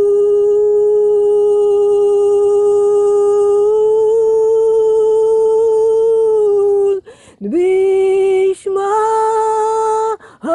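A wordless held note, sung or hummed, sustained for about seven seconds with a slight rise in pitch partway through. It breaks off, then comes two shorter notes, each sliding up into pitch as it starts.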